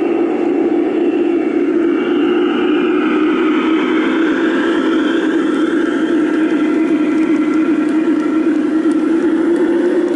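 G-scale battery-powered model diesel locomotives, a Southern Pacific SD-45 with Cotton Belt GP-40s, running past close by with a loud, steady drone. A higher whine slides up and down in pitch during the middle.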